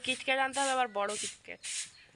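A woman talking, with sharp hissing sibilants between her voiced syllables.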